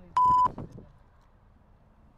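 A single electronic beep at one steady pitch, lasting about a third of a second just after the start and much louder than everything around it.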